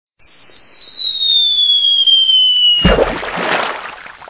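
Cartoon falling sound effect: a long whistle sliding down in pitch for about two and a half seconds, then a loud crash about three seconds in that dies away. It signals a character falling down a manhole.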